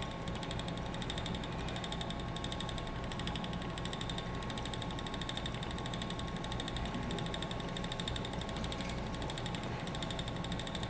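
Ashford Elizabeth 2 spinning wheel running steadily under the treadle as yarn is spun, a continuous whir with a rapid, even ticking from the turning wheel and flyer.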